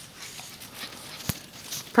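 Faint crunching of footsteps in snow, with a single sharp click a little past halfway.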